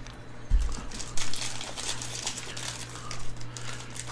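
Foil wrapper of a 2023 Panini Score football hobby pack crinkling as it is picked up and handled in gloved hands, with a soft thump about half a second in, over a steady low electrical hum.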